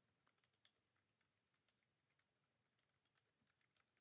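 Very faint computer keyboard typing: a run of irregular key clicks as a password is typed in.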